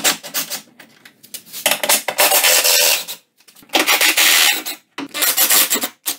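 Cordless ratchet running in four rasping bursts, a second or so each with short pauses between, as it spins out 10 mm fender bolts.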